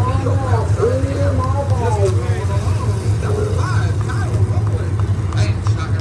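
A field of Hobby Stock race cars rumbling at low speed on a parade lap, a steady low engine drone. A PA announcer's voice over the track loudspeakers runs through the first half.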